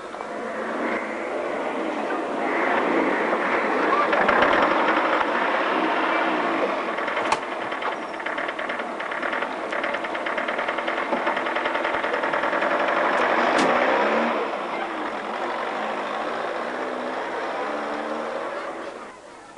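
An old bus's engine running, louder through the middle and easing off near the end.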